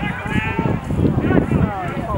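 Spectators on the sideline calling out in long, wavering, indistinct shouts, with a low rumble underneath.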